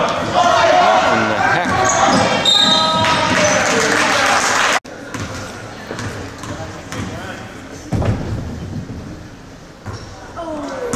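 Basketball bouncing on a hardwood gym floor amid shouting voices in a large echoing hall. A little before halfway the sound cuts off sharply to a quieter gym, where a few ball bounces near the end come from a player dribbling at the free-throw line before a shot.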